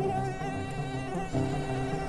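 Mosquito wingbeat whine: a steady, high-pitched buzzing tone, with low background music beneath it.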